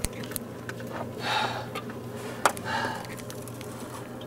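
Two soft breaths and a few light handling clicks over a low steady hum, in a small enclosed space.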